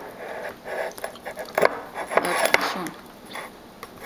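Close-up handling sounds: a ceramic plate and soft pieces of peeled sugar apple being moved on a table, with a few sharp clicks. A brief spoken word comes near the end.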